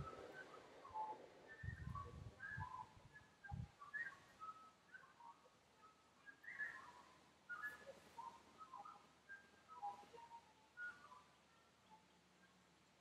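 Faint chirping of small birds: many short high notes scattered through, with a few low rumbles in the first four seconds.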